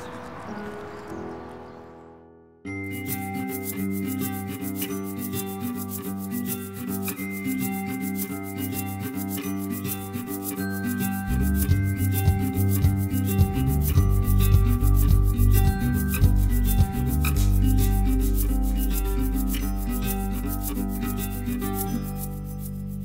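Background music that starts suddenly a few seconds in: held notes over a fast, even ticking rhythm, with a deep bass coming in about halfway through.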